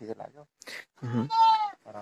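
A goat bleats once, a little after a second in, the call sliding slightly down in pitch as it ends.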